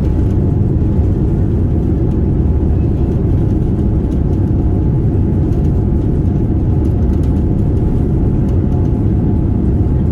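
Steady low rumble inside the cabin of a Boeing 787-9 rolling out on the runway just after touchdown, spoilers raised: engine and wheel noise as the jet slows.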